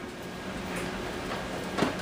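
A fork raking through the soft flesh of a roasted spaghetti squash half, shredding it into strands: faint, soft scrapes over a steady low background hum.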